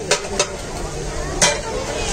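A metal spatula scraping and striking a large flat street-stall griddle (tawa) while food sizzles on it. There are a few sharp strikes, and the loudest comes about a second and a half in.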